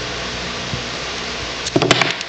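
Steady background hiss, with a quick cluster of sharp clicks near the end as white PVC pipe parts are handled and pushed together.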